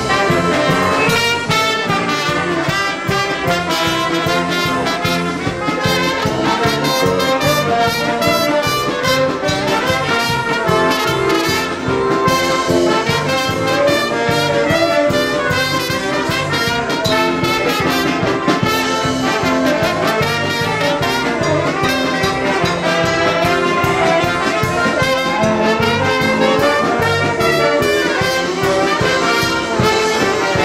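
Live band playing an instrumental passage led by its brass section, with trumpet, trombone and saxophone over a steady drum beat and bass guitar.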